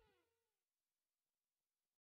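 Near silence: the very end of a music fade-out.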